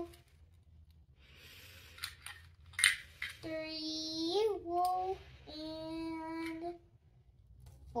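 A child's voice holding two long, drawn-out sung notes in the second half, like counting sung aloud. A couple of sharp clicks of small plastic toy pieces being set down come before the notes.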